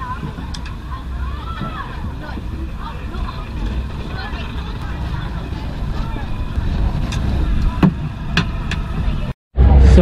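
A ride attendant securing a ride car's metal lap bar: two sharp metal clicks near the end, over a low steady rumble and distant voices. The sound cuts off abruptly just before the end.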